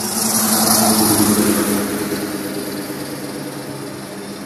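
A noisy car passing by on the street: its engine hum and tyre noise grow loudest about a second in, then fade as it drives away.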